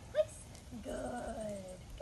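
A dog gives one short, sharp yip, then a longer whine that slowly falls in pitch.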